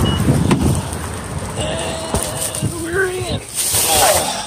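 Noisy handling, rustling and knocks as someone opens a car door and climbs in with grocery bags in the rain, with a dense rumbling noise in the first second. A wordless vocal sound wavers in pitch partway through.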